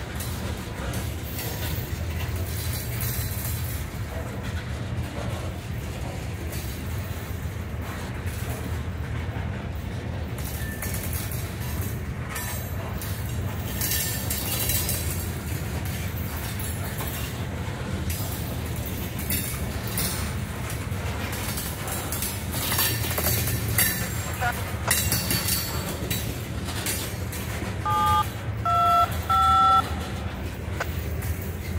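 Freight train of covered hopper cars rolling past close by: a steady low rumble of wheels on rail with scattered clanks and squeals. Near the end, a radio scanner gives three short two-tone touch-tone beeps.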